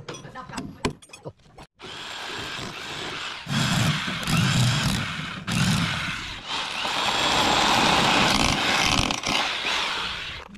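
A few light metal clinks and taps, then after a short break an electric rotary hammer drill bores into a concrete floor, running loud and steady with a couple of brief let-ups.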